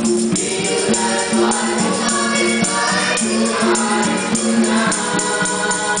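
Nasyid group of young male voices singing together in harmony through microphones, over a steady beat of light percussion hits.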